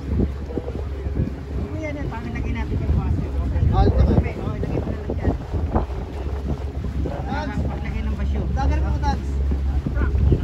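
Steady low wind rumble on the microphone aboard a moving boat, with people talking over it at times.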